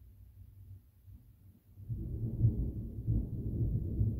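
Deep rumble of distant thunder that starts about two seconds in and carries on, over a faint low hum.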